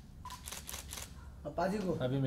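Camera shutters of several photographers firing in rapid, overlapping bursts, a quick run of clicks several times a second. A man's voice comes in near the end.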